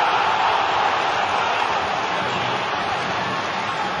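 Football stadium crowd cheering a goal: a loud, steady wall of cheering that eases slightly toward the end.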